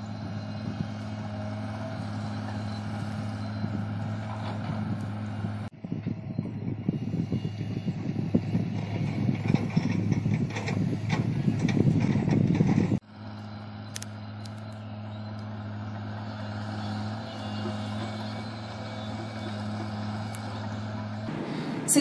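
Distant diesel excavators and trucks working: a steady low engine hum, broken in the middle by a louder, rougher rumble between two abrupt cuts.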